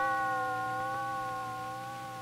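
A single held musical note, one steady pitch with overtones, comes in suddenly and slowly fades.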